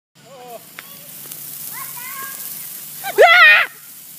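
Excited high children's voices calling out, then a loud wavering shriek about three seconds in. Under them runs a steady hiss from a ground fountain firework.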